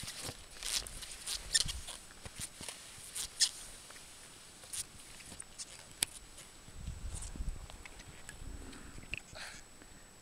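Cross-country skis and poles on snow: a run of short scrapes and crunches in the first three or four seconds, sparser and fainter after that. A low rumble comes in around seven seconds.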